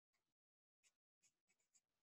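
Very faint writing strokes, a handful of short scrapes of a pen or marker on a writing surface, at near-silent level.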